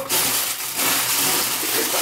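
Clear plastic packaging rustling continuously as a bagged ball of yarn is pulled out of a cardboard box.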